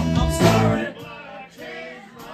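Live blues band with electric guitar, bass, drums and saxophone playing, then stopping abruptly just under a second in for a break in which only singing voices are left.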